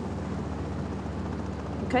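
A steady low drone, the kind a distant engine makes, running without change; a short spoken word comes right at the end.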